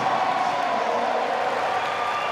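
Large arena crowd cheering and clapping in one steady roar, celebrating a completed heavy deadlift.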